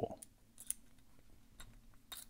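A few faint metallic clicks, the loudest a little under a second in, from a steel tension tool turning in the disc detainer core of a Viro 166 motorcycle disc brake lock. The core's sloppy tolerances let it be forced open with the tension tool alone.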